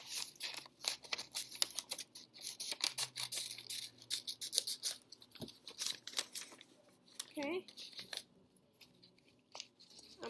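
Stiff white paper being handled and cut apart: a rapid run of sharp, crackling rustles and snips for about seven seconds, then it stops.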